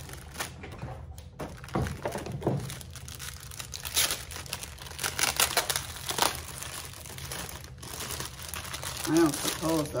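Clear plastic bags crinkling and crackling in irregular bursts as they are handled and pulled open. A voice starts speaking near the end.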